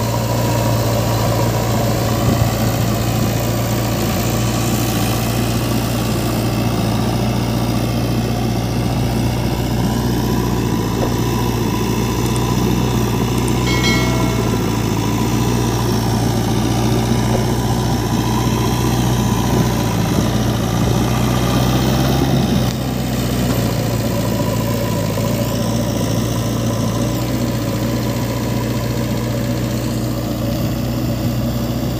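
JCB 3DX backhoe loader's diesel engine running steadily with a low hum while the front bucket pushes soil. The level drops slightly about two-thirds of the way through.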